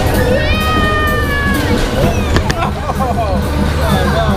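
A child's long, high-pitched squeal that slides slowly down in pitch, followed by shorter excited vocal sounds, over music and a steady low hum.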